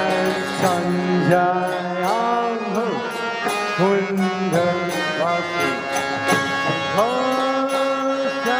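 Kirtan music: chanted devotional singing whose pitch slides up into held notes, over a steady patter of percussion strikes.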